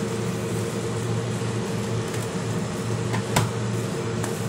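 A spatula stirs and tosses pancit bihon rice noodles in a metal pan over a steady hum and hiss. Near the end the spatula strikes the pan in one sharp click.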